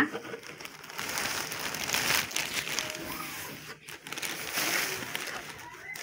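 Thin clear plastic bag rustling and crinkling as hands pull it open and off.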